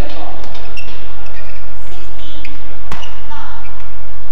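Badminton rally: sharp racket-on-shuttlecock hits, the loudest about three seconds in, with short shoe squeaks on the court mat, over a steady low hum.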